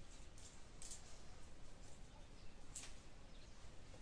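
Quiet room tone with three brief, soft swishes as long hair is handled and swung.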